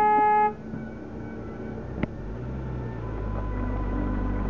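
A car horn gives one short toot, about half a second long, at the start. About two seconds in there is a sharp click, then a low steady rumble sets in.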